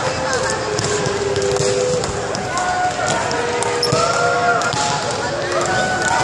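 Volleyballs being struck and bouncing on a hardwood gym floor during a team warm-up drill: a steady run of irregular sharp smacks. Players' voices call out in the echoing hall throughout.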